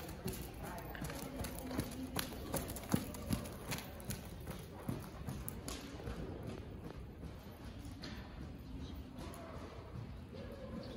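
Horse's hooves trotting on the soft sand footing of an indoor arena, with a few sharper knocks standing out in the first half.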